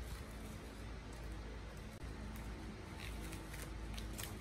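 Faint rustle and crinkle of plastic cling film being pressed down over a steel bowl, a few soft crinkles in the second half, over a low steady room hum.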